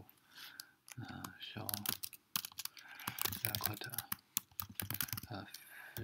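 Typing on a computer keyboard: quick, irregular runs of keystroke clicks as words are typed.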